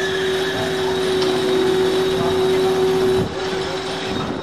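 A steady mechanical hum holding one tone over outdoor street noise. The hum drops in level a little past three seconds.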